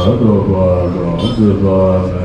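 Deep male voices chanting a Tibetan Buddhist prayer in long, held, low notes that slide slowly between pitches.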